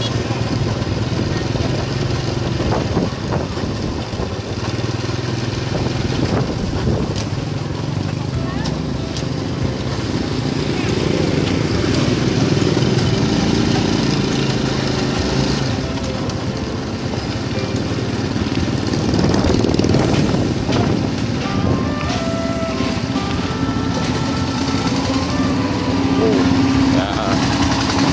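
Motorbike engine running steadily as it rides along a street, with a low hum and a rush of road noise.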